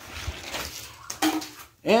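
Die-cast toy monster truck rolling fast down an orange plastic track ramp, a rattling rumble of hard wheels on plastic, with a sharp clatter a little over a second in as it lands off the ramp.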